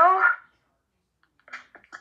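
A voice trailing off at the end of a sentence, then dead silence, with a couple of short faint mouth or voice sounds near the end.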